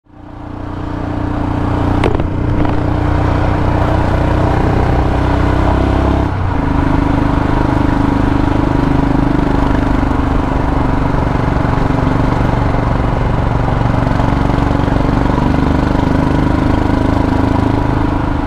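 Royal Enfield Himalayan's single-cylinder engine running steadily while riding along a lane, with road and wind noise, fading in at the start. A single sharp click comes about two seconds in, and the engine note dips briefly about six seconds in.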